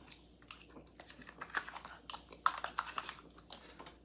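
A person eating pudding as fast as possible: faint, irregular wet mouth and swallowing sounds with small clicks, thickest in the middle and stopping just before the end.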